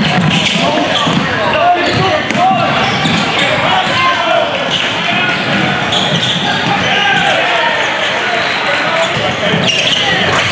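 Live basketball game in a large gym: crowd and player voices chattering and calling out, with a basketball bouncing on a hardwood court and a few sharp impacts, echoing in the hall.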